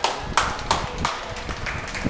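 Spectators clapping in unison in a steady rhythm, about three sharp claps a second, one pair of hands loud and close.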